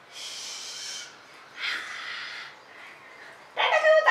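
A toddler's voice: two short breathy, hissing sounds in the first half, then near the end a louder, short high-pitched vocal squeal.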